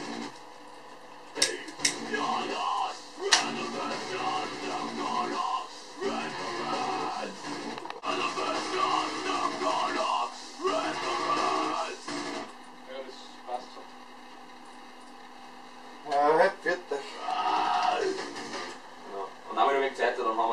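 A metal vocal take: a voice in short phrases over a backing track. There is a gap of a few seconds past the middle, then louder phrases near the end.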